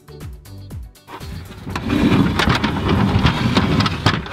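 Background music with a steady beat, then from about a second and a half in a loud scraping and rattling as an aluminium Little Giant Select-A-Step ladder is dragged out across the wooden floor of an RV storage bay.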